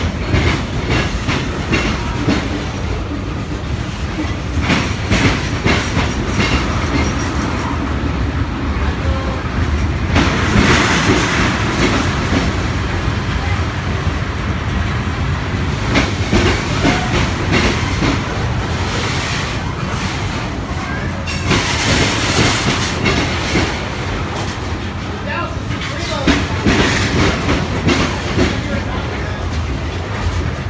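Freight train of covered hoppers and tank cars rolling past close by: a steady low rumble with wheels clacking over the rail joints, and two louder spells of high hissing from the wheels.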